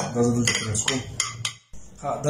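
Light clinks of glass and crockery being handled on a table: a glass conical flask and a ceramic plate knocked together or set down, several short sharp ticks in the first second and a half. The sound cuts out suddenly for a moment near the end.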